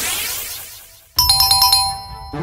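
An electronic whoosh sound effect fades away over the first second. Then a sudden, rapid run of bright electronic chimes plays for under a second, a quiz-style 'correct answer' jingle.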